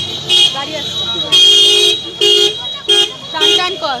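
Vehicle horns honking in street traffic: about five steady-pitched blasts, most short and one lasting about half a second.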